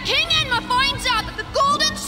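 A high-pitched cartoon voice whining and straining in short cries that rise and fall in pitch, over background music.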